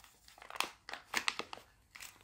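Plastic packet of suction hooks crinkling and crackling as it is pulled open by hand, in a quick run of short crackles.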